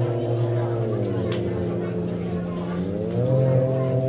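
Sustained electronic synthesizer chord, several held notes whose upper notes slide down in pitch and then back up about three seconds in.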